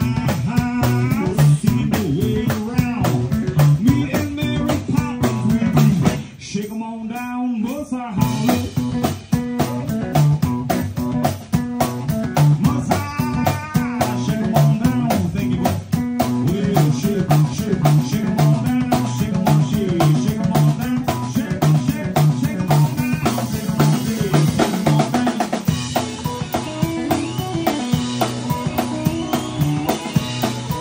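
Live blues band playing an instrumental passage: guitar over a steady drum beat. About six seconds in the beat drops out for a couple of seconds while the guitar carries on alone, then the band comes back in.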